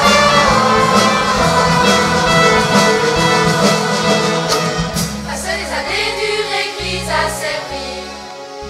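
Live pop band playing an instrumental passage between sung verses, with keyboards, acoustic guitar and a drum kit. About five seconds in, the drums drop out and the music thins to held bass notes under a softer melody.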